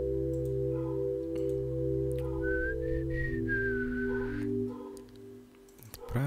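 Soft synth pad from the Xpand!2 plugin holding a sustained chord progression over a low bass, the chord shifting about two seconds in. A high whistling line floats over it in the middle, and the pad fades out about four and a half seconds in.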